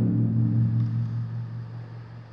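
Low ringing boom of large taiko drums dying away after being struck, a steady deep hum that fades gradually.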